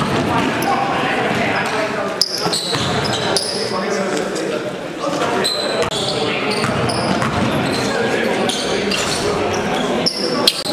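Live game sound on a hardwood basketball court: a basketball bouncing as it is dribbled, with players' voices, in a large gym.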